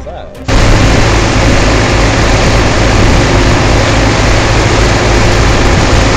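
Water gushing from large irrigation pump outlet pipes into a concrete canal: a loud, steady rush that starts abruptly about half a second in, with a steady low hum beneath it.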